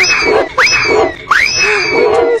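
An animal's high call, three in a row, each sweeping sharply up in pitch and then holding for about half a second.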